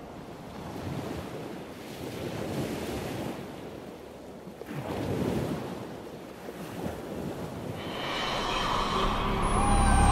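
Sea waves washing, rising and falling in swells. Music fades in over the last two seconds with a falling high sweep.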